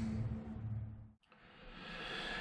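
Faint room tone: a steady low hum and hiss that drops out briefly a little after a second in, then comes back.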